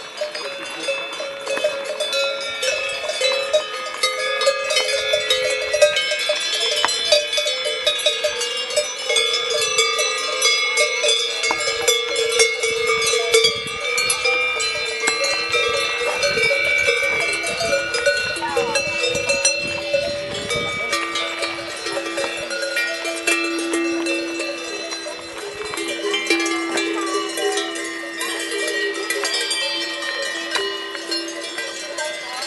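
Many cowbells ringing on a herd of grazing cows, overlapping clanks and rings at many different pitches.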